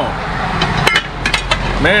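A few sharp metallic clinks about a second in from an aluminium cooking-pot lid being handled against the pot, over a steady low background rumble.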